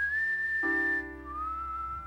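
A man whistling a slow melody: one high note held for about a second, then a lower note that slides up into pitch and is held. A piano chord is struck under it about halfway through.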